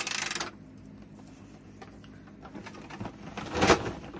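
Plastic Transformers Decepticon puppet toy's mechanism giving a short, rapid clicking rattle at the start as it is worked. Near the end comes a louder rustle and knock of it being handled and set down.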